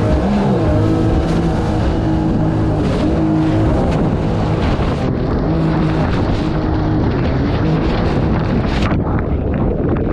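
Mini jet boat's engine running hard through rapids, its pitch stepping up and down as the throttle changes. Under it is the rush of whitewater and spray against the hull.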